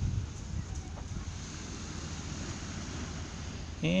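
Steady low background rumble of outdoor ambience, with no distinct events. A man's voice starts just at the end.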